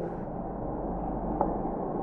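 Steady room noise with a low mains hum, and one faint tap about one and a half seconds in.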